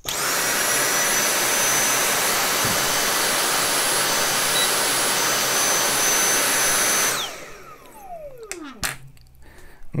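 Dyson cordless stick vacuum running at maximum power with a high-pitched whine, then cutting out suddenly about seven seconds in and spinning down with a long falling whine. The cut-out is the battery protection board shutting off: under the roughly 18–20 A load the weakest worn 18650 cell sags to about 3 V.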